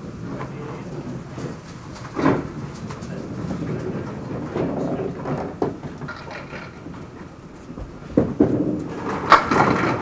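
Bowling-alley crowd murmuring quietly. Near the end, a candlepin ball rolls down the wooden lane and crashes into the pins for a strike.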